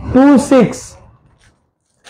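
A man speaking briefly: a short phrase of speech near the start.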